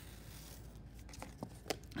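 Faint scratching of a felt-tip marker drawn across cardboard, with a few light clicks in the second half as the cardboard sheet is handled.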